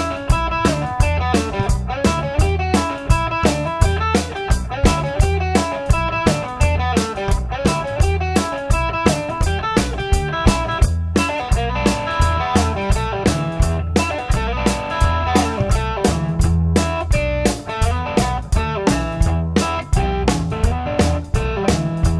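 Electric blues band playing an instrumental stretch: electric guitar over bass and a steady drum beat, about three hits a second.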